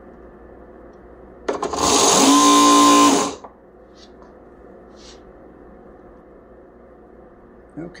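Sewing machine motor on a prony brake dyno doing a quick run under load: about a second and a half in it spins up with a rising whine that levels off, mixed with a loud rushing noise. After under two seconds it is cut off suddenly.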